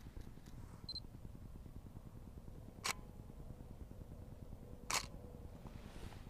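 DSLR shutter firing a two-second exposure: one click as the shutter opens and a second click as it closes two seconds later. A short high beep comes about a second in.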